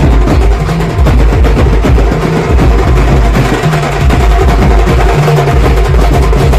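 Loud banjo-party band music: marching drums beaten with sticks in a dense, fast rhythm over heavy amplified bass and held keyboard melody notes from large speaker stacks.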